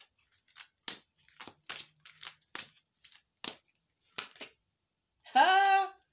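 Tarot cards being shuffled by hand: a run of short, crisp card clicks, about three a second, that stops a little after four seconds in. A woman's voice follows briefly near the end.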